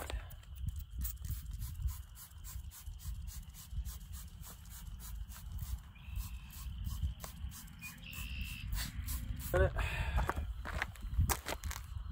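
Trigger spray bottle of waterless car wash being squeezed again and again onto a car's rear panel, a run of short clicks and squirts over a low wind rumble on the microphone.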